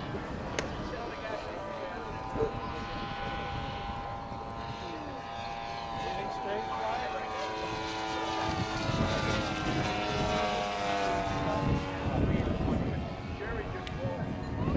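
Engine and propeller of a radio-controlled scale Cessna 152 model in flight: a steady droning tone whose pitch shifts as the plane moves across the sky, growing louder in the second half.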